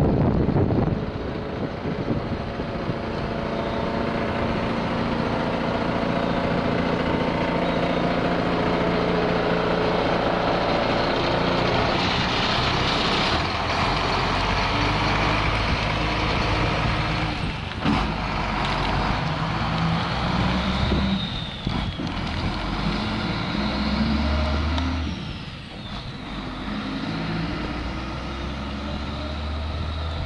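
Medium-duty flatbed truck's engine running as the truck drives around and pulls away, its note climbing and dropping in steps as it goes through the gears, with a sharp knock about eighteen seconds in.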